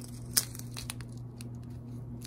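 Clear plastic bags of square diamond-painting drills crinkling as they are handled, with a few sharp crackles, the loudest about half a second in, over a steady low hum.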